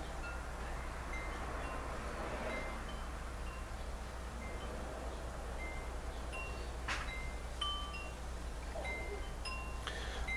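Wind chimes ringing: scattered single clear notes at several different pitches, one after another, each dying away quickly, over a steady low hum. There is a sharp click about seven seconds in.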